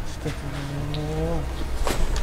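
A person's low, drawn-out moan held at one pitch for about a second, the groan of a medium going into possession, followed by a short sharp click near the end.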